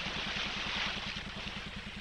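A soft, steady hiss with a low, fast-pulsing hum underneath, in a quiet gap in an old cartoon soundtrack between two sung lines.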